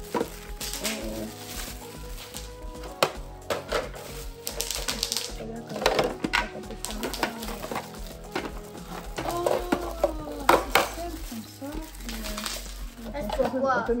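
Background music with steady held tones, over crinkling and rustling of thin plastic film being pulled off clear plastic fridge bins, with light clicks and knocks of the hard plastic bins being handled.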